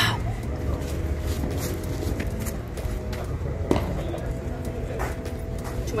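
Outdoor background of a steady low rumble with a faint hum, broken by a few short, sharp knocks, the loudest about two-thirds of the way in.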